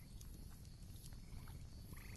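Faint background ambience: a low steady hiss with a high, rapidly pulsed trilling call, a small animal call, heard faintly in the second half and again starting at the very end.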